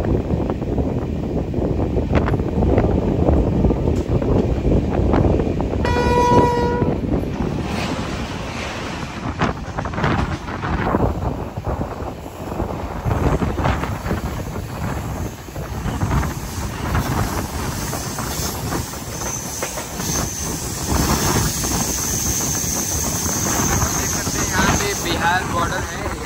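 Moving passenger train, a steady rumble of wheels on rail. A train horn sounds once, briefly, about six seconds in. An electric locomotive passes on the adjacent track, with clacks of wheels over rail joints through the middle.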